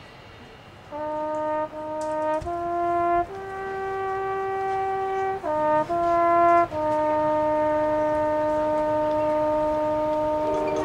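A solo brass instrument from a marching band plays a slow melody of held notes. It starts about a second in, rises through three notes to a long note, dips briefly, then settles on a long held low note.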